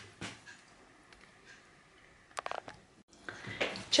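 Quiet room tone broken by one light click just after the start and a quick run of about six sharp ticks about two and a half seconds in.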